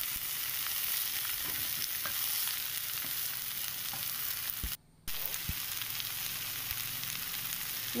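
Chopped amaranth leaves with grated coconut and shallots sizzling in a hot pan while being stirred with a wooden spatula, with a few light spatula taps. The sound drops out briefly just under five seconds in.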